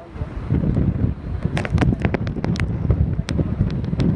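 Wind buffeting the microphone: an uneven, gusty low rumble with a few sharp pops.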